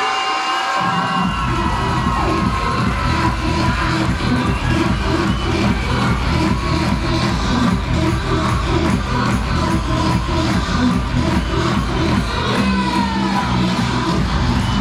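Dance music with a steady beat, played over stadium loudspeakers for a majorette drill routine; the beat comes in about a second in. A crowd cheers over it, with shrill shouts near the end.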